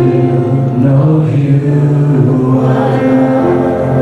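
Live worship band of electric guitars, piano and drum kit playing a worship song, with long held notes.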